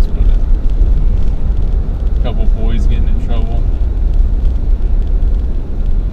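Steady low drone of road and engine noise inside the cab of a Ford F-350 pickup cruising at highway speed.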